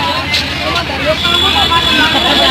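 Indistinct voices of several people talking in a crowd, over a steady low hum.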